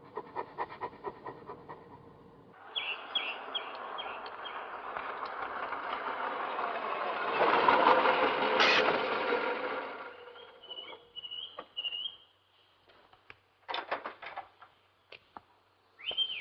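A motor vehicle drawing closer, loudest about eight seconds in, then fading away, with birds chirping. A run of quick clicks comes first, and a few knocks sound near the end.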